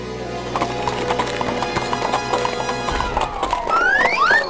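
Galloping hoofbeat sound effect, a fast run of clip-clops, over background music, with a few rising swoops in pitch near the end.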